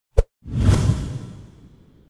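Logo-intro sound effect: a short pop, then a whoosh with a deep rumble that fades away over about a second and a half.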